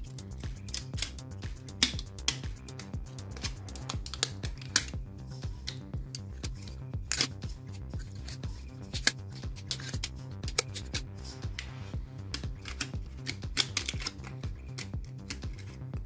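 Copper magnet wire being hand-wound into an armature's slots, with many small irregular clicks and crinkles as the wire is pulled through and rubs against the paper slot insulators, over steady background music.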